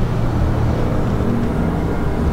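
Cessna 140's small piston engine and propeller droning steadily as the plane passes low overhead on final approach.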